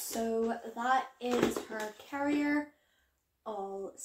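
A woman talking, close to the microphone in a small room.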